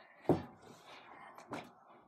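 A boy says one short word. The small room is then quiet except for a faint single thump about one and a half seconds in.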